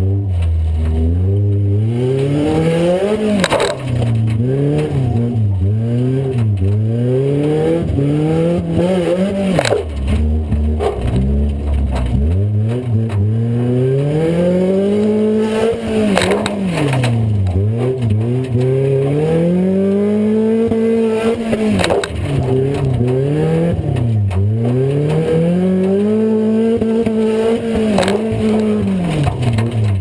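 A demo-cross car's engine, heard from inside the stripped cabin, revving up and dropping back again and again as it is driven hard around the dirt track. A sharp bang or clatter from the car's body comes every few seconds.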